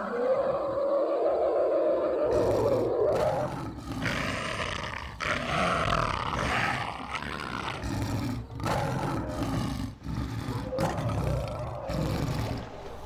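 Big cat roaring again and again: a series of long, rough roars with short breaks between them. The first roar is the longest and loudest.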